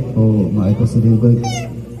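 A man speaking into a handheld microphone, his words not made out. About one and a half seconds in comes a brief, high, sweeping call.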